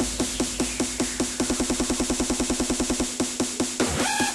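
Hardstyle electronic dance music in a build-up: the pitched drum hits speed up from about five a second to a fast roll, and the deep bass drops out about three seconds in.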